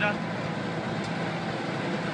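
Steady low engine hum with a constant pitch, typical of a large vehicle engine running at an even speed.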